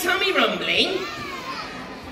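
Several children's voices calling out at once from the audience, high and overlapping, fading toward the end.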